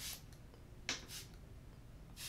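Pump-spray bottle of face primer sprayed at a face: three short hissing puffs of mist, the middle one the sharpest and loudest.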